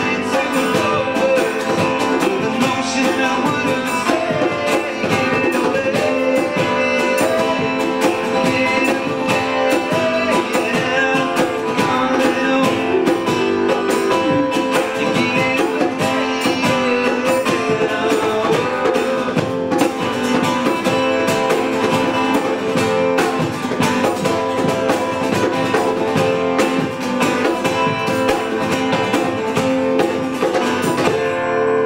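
Acoustic guitars strummed in a steady, busy rhythm as a band plays a song, with sustained melody notes over the strumming.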